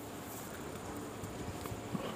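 Faint, steady background noise with a few light, irregular clicks, one a little before the end.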